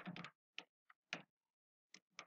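Computer keyboard being typed on: a faint quick cluster of keystrokes at the start, then three single key taps over the next second.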